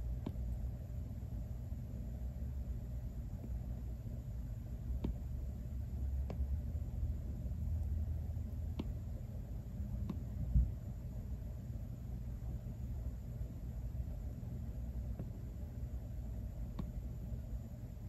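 Apple Pencil tip tapping on the iPad's glass screen: about eight light, sharp taps a second or more apart over a steady low room rumble, with one soft low thump about ten seconds in.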